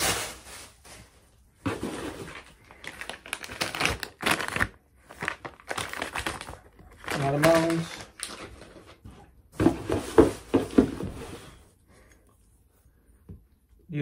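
Packing wrap and a plastic parts bag crinkling and rustling as they are handled and opened, in irregular bursts.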